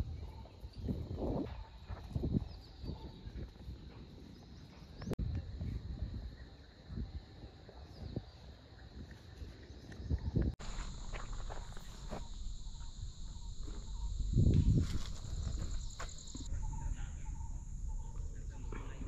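Outdoor ambience: insects droning at one steady high pitch, strongest for several seconds in the second half, over low rumbling gusts on the microphone. The background changes abruptly where the shots cut.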